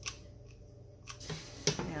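Handling of a hot glue gun and fabric: a few light clicks and taps, the sharpest near the end.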